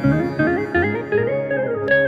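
Electronic keyboard playing a Carnatic melody in raga Bilahari, the tune sliding up and down between notes in gamaka-like bends over lower notes struck at a steady beat.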